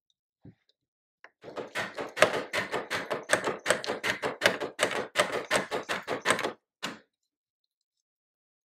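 Herzberg double-barrel bassoon reed profiler's blade shaving the cane in a quick run of short scraping strokes, about three or four a second, as the barrel is worked back and forth. It starts about a second and a half in, runs for about five seconds and ends with one last stroke.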